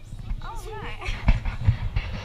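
A person's wavering, sing-song voice about half a second in, over other passengers' murmur, then low thuds and rumble of handling noise on the pole-mounted camera.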